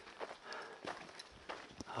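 Footsteps of a hiker walking on a dirt mountain trail, quiet and in a steady walking rhythm.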